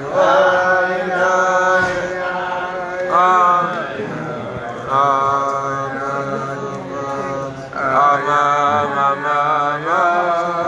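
Men's voices singing a wordless Chassidic niggun together, on long held notes that rise and fall, carried on syllables like "ya-da-ra-ma".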